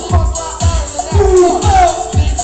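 Live electronic dance-pop music played loud through a club PA, with a steady four-on-the-floor kick drum about twice a second and gliding synth or vocal lines over it.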